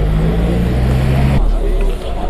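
Steady low hum of a motor vehicle's engine running, which changes about one and a half seconds in, leaving a deeper rumble.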